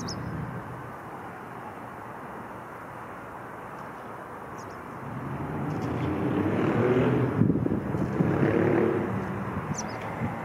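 A road vehicle passing: its noise swells from about halfway, peaks around seven to nine seconds in and eases off near the end, over a steady background of distant traffic. A few short, high bird chirps come through, one right at the start and one near the end.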